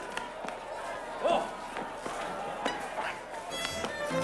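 Crowd commotion in a scuffle: scattered shouts and cries, the loudest about a second in, among irregular knocks and thumps. Music comes in near the end.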